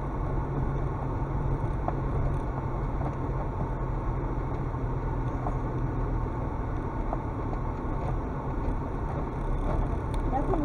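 Car engine running steadily at low speed, with rumbling road noise from the tyres and body on a rough dirt and gravel track, heard from inside the cabin.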